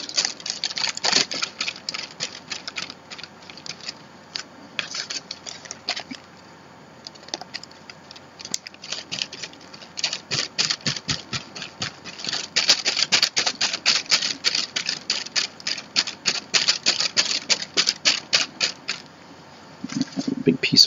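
Paintbrush scrubbing and dabbing gel matte medium into tissue paper on a journal page: short scratchy strokes, scattered at first, then quick and regular at about four a second from halfway through until near the end.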